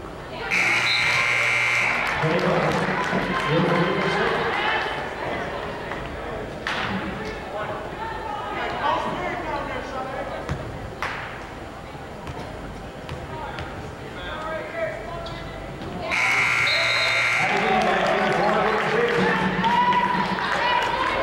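Gym scoreboard buzzer sounding twice, each blast about a second and a half long and about fifteen seconds apart. Between the blasts there are voices and a few sharp knocks in the hall's echo.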